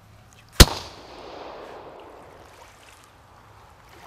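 A single rifle shot about half a second in, a sharp crack followed by a rolling echo that dies away over a second or two.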